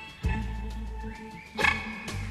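Electric blues band playing an instrumental passage led by amplified harmonica played into a cupped microphone, over bass and drums. The harmonica notes bend in pitch in the middle, and the band hits loud accents about a quarter second in and again near the end.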